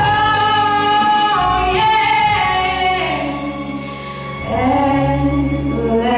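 A woman singing a slow ballad into a handheld microphone over instrumental accompaniment, holding long notes that step down in pitch, easing off about four seconds in, then sliding up into a new note.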